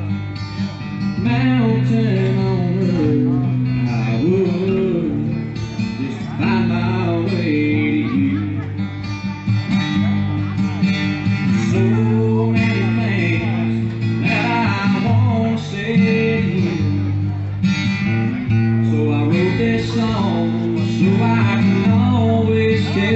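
Live acoustic guitar strummed steadily with a man singing over it, a solo voice-and-guitar song amplified through a stage PA.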